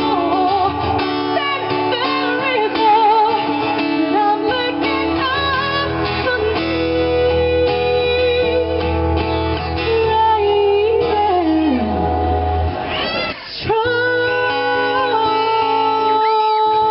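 A woman singing a slow song with vibrato, accompanied by acoustic guitar. About three-quarters of the way through, a note slides downward, and the music dips briefly before picking up again.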